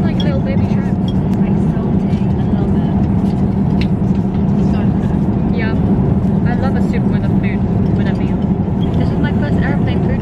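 Steady, loud airliner cabin noise in flight: a constant low drone with a hum in it that never lets up.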